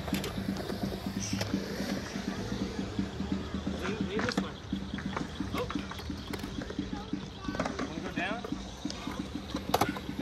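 Skateboard wheels rolling on concrete with a steady rough rumble, broken by a few sharp clacks, with voices in the background.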